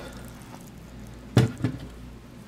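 Quiet room tone with a steady low hum, broken about a second and a half in by one short spoken word.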